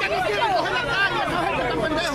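A crowd of many voices talking over one another at once, with no single speaker standing out.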